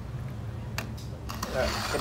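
Wet whole fish being shifted by hand in a plastic bowl, with a couple of faint clicks, over a steady low hum. A voice starts speaking near the end.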